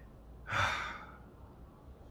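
A man's short breathy sigh, about half a second in, lasting about half a second.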